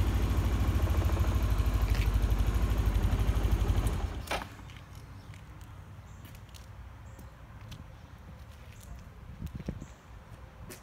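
2012 Suzuki Burgman 400 scooter's liquid-cooled, fuel-injected single-cylinder engine idling with an even pulse. It is shut off about four seconds in with a sharp click, and only a few faint clicks follow.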